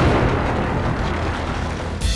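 Rock-blasting explosives going off: a sudden blast right at the start, then a deep rumble that slowly dies away.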